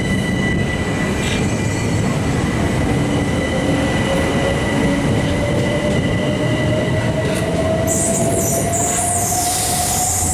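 Eight-car Southern Class 377 Electrostar electric train pulling away, with the rumble of its wheels on the rails and a whine that rises slowly in pitch as it gathers speed. A steady high tone fades out in the first few seconds, and a high hiss comes in near the end.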